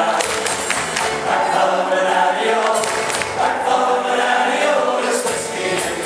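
Irish folk band performing live: several male voices singing together in harmony, with guitar accompaniment.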